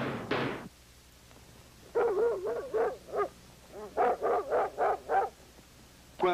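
A dog barking in two quick runs of about ten barks in all: alarm barking that, in this household, means a raccoon has come around after the trash.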